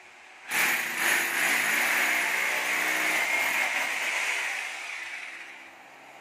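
An electric power tool used for termite drilling-and-injection treatment runs loudly, starting abruptly about half a second in and fading away near the end.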